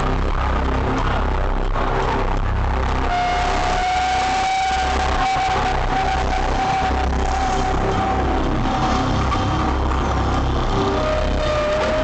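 Concert sound system playing loud, bass-heavy intro music. A long held high synth note comes in about three seconds in and fades, and a slightly lower one enters near the end.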